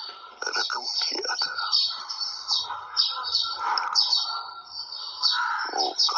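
Indistinct, low-voiced speech that the words cannot be made out of, thin in sound with little low end.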